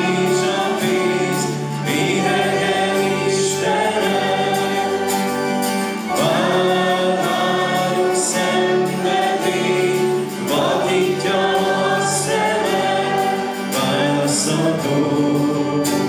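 A congregation singing a hymn together, accompanied by acoustic guitar.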